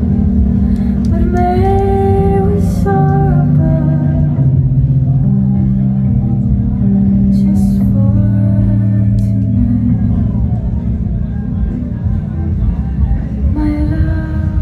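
Live electronic keyboard music: sustained low bass notes that step to a new pitch every second or two, with a higher melodic line coming in twice.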